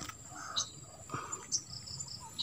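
Insects droning on one steady high note, with a few faint short sounds and soft clicks over it.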